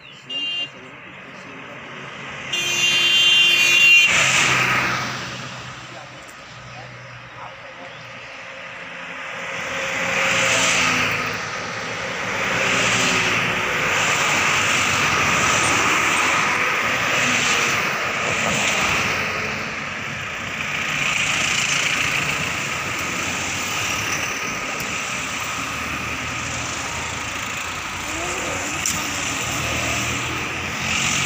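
Cars and SUVs driving past on a highway, with a vehicle horn sounding briefly about three seconds in; the traffic noise swells again and again through the rest of the stretch.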